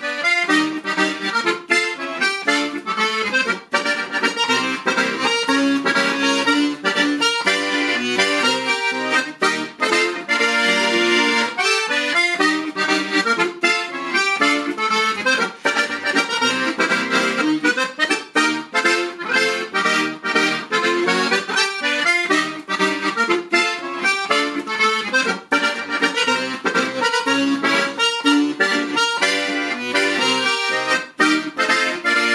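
Solloni piano accordion playing a fast polka, a busy run of quick, clipped notes.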